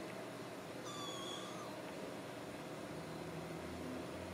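A Ragdoll kitten gives one short, faint, high-pitched mew about a second in while wrestling with a littermate.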